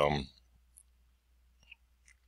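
A spoken word trails off at the start, then near silence with a couple of faint, short computer-mouse clicks.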